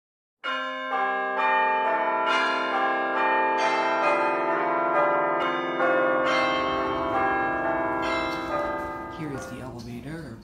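A string of bell tones: a new note struck every half second or so, each ringing on over the ones before, then dying away near the end. A low room rumble comes in about halfway through.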